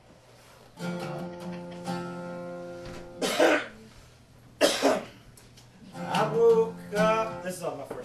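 An acoustic guitar chord strummed about a second in and left ringing for a couple of seconds, then two loud coughs a little over a second apart, followed by a man's voice.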